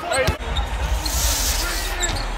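A basketball bouncing on a hardwood court over low arena ambience, with a sharp thud about a third of a second in and a brief hiss in the second half.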